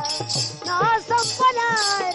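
A woman singing a Marathi Bhimgeet folk song over a one-string ektara plucked in a steady rhythm, with a hand-held jingling rattle shaken about twice a second.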